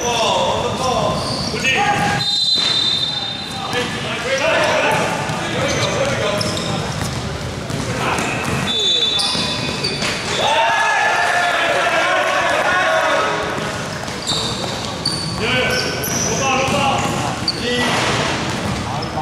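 Basketball being played in a large, echoing indoor hall: the ball bouncing on the court, a couple of short, high sneaker squeaks, and players' voices and calls throughout.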